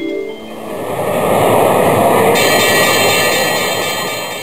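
Intro sound effect: a rush of noise that swells over the first two seconds, with a steady high ringing joining it about two seconds in.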